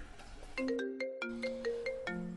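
Mobile phone ringtone for an incoming call: a melody of clear, held notes stepping up and down in pitch, starting about half a second in.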